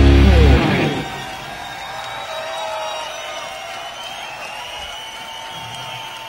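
Live hard-rock band, drums and distorted electric guitars, playing loudly and stopping about half a second in. What follows is much quieter: held, ringing guitar tones.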